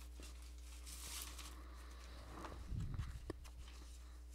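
Faint handling noises as a person reaches for and moves objects while searching for something: a soft rustle about a second in, a low bump near three seconds and one sharp click just after it, over a steady low hum.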